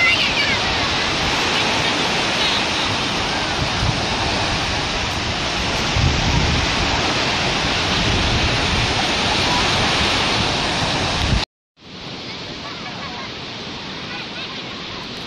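Small waves breaking and washing up a sandy shore in a steady rush of surf, with faint distant voices. Near the end the sound cuts out for a moment and a quieter, even hiss follows.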